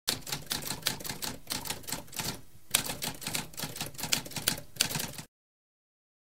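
Typewriter typing: a run of rapid keystrokes with a short break about two and a half seconds in, stopping abruptly a little after five seconds.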